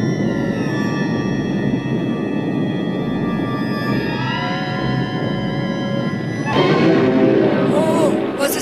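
Ominous cartoon background score: held chords slide downward and later back up over a low rumbling bed. About six and a half seconds in, a steady rush of rain sound joins and the sound grows louder.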